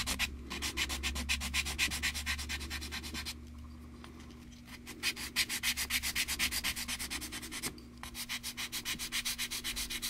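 A small plastic model-kit part sanded by hand on a sanding stick in quick back-and-forth strokes, about six a second. The strokes pause from about three to five seconds in, and again briefly near eight seconds.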